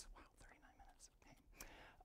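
Near silence: room tone with faint breathy sounds, just after the tail of a man's spoken 'wow'.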